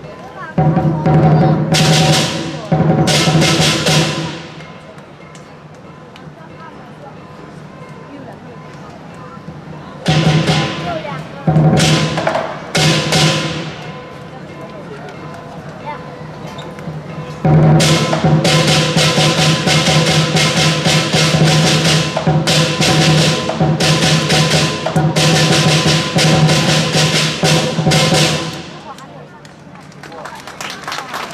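Southern Chinese lion dance accompaniment: a big drum with ringing hand cymbals, played in loud bursts. A short passage near the start, another about a third of the way in, then a long unbroken passage through most of the second half that stops shortly before the end.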